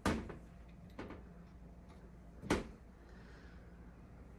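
Metal frame of a multi-bar wire soap cutter knocking as it is handled and set in place: a sharp clunk at the start, a lighter knock about a second in, and another clunk about two and a half seconds in.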